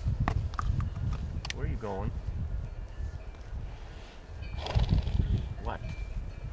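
A horse whinnies once about two seconds in: a short call that falls in pitch with a quavering wobble. A shorter wavering call comes near the end, over a low rumble on the microphone.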